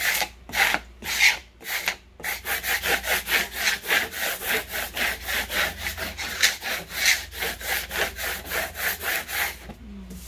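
Plastic squeegee scraped back and forth over transfer tape laid on a vinyl decal sheet, burnishing the tape so the cut letters stick to it. The scraping strokes come about every half second at first, then speed up to about three or four a second.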